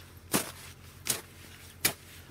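A plastic snow shovel jabbing into packed snow three times, about three-quarters of a second apart.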